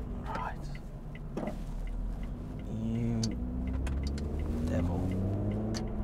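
Supercharged 3.5-litre V6 of a Lotus Evora 400 automatic, heard from inside the cabin: a low rumble at first, then, about three seconds in, the engine note rises steadily as the car accelerates on a light throttle.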